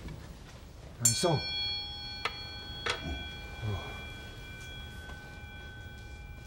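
A Buddhist altar bell (rin) at a household butsudan, struck once about a second in and then ringing on with a long, slowly fading tone. A couple of short clicks come soon after the strike.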